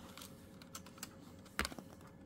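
Faint clicks and light rustling from insulated wires being handled at a telephone's screw terminal board, with one sharper click about one and a half seconds in.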